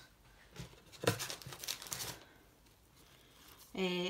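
Gift packaging crinkling and rustling as it is handled, starting about a second in and lasting about a second.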